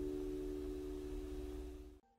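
The last held chord of a pop song's accompaniment dying away: a few steady, pure-sounding tones fading out gradually toward the end.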